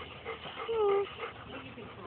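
Golden retriever giving one short, slightly falling whine a little under a second in.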